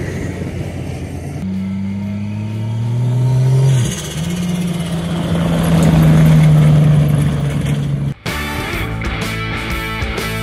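A Toyota LandCruiser 40-series-cab ute with a turbocharged Ford Barra inline-six drives past on a dirt track. Its engine revs climb, drop at a gear change about four seconds in, then hold steady and grow loudest as it passes close, around six seconds in. Just past eight seconds the sound cuts to music.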